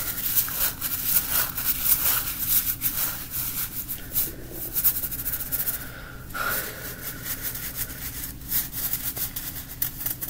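Fingers squeezing, rubbing and scratching a small blue penguin-shaped toy close to the microphone, giving a fast, crackly rustle of many small clicks. There is a brief pause about six seconds in.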